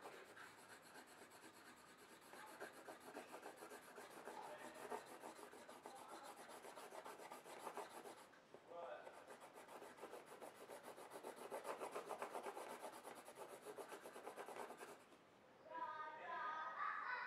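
Green colored pencil rubbing faintly on paper in quick back-and-forth shading strokes, with a short break about eight seconds in; the strokes stop about a second before the end.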